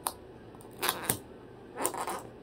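Cockatoo's beak snipping and crunching pieces of cardboard, four crisp snaps: one at the start, two close together around the middle, and one near the end.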